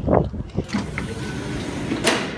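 Steady low outdoor background rumble, after a brief vocal sound at the start.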